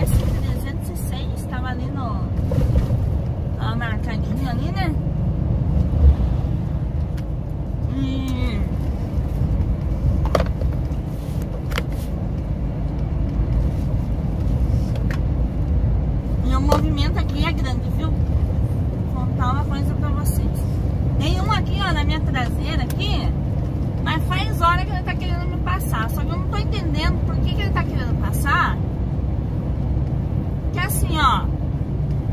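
Scania 113 truck's six-cylinder diesel engine running at a steady cruise, heard from inside the cab as a constant low drone.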